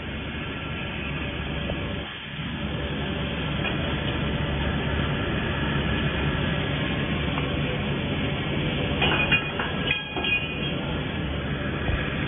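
Steady mechanical running noise of factory machinery, with a few short clattering sounds about nine to ten seconds in.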